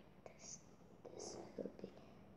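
Faint whispering with sharp hissing sounds, and a few soft clicks.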